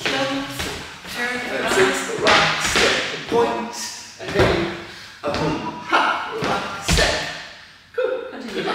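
Dance shoes stepping and stamping on a wooden floor as a couple dances swing-dance footwork, with a voice going on over it. A heavier thump comes near the end.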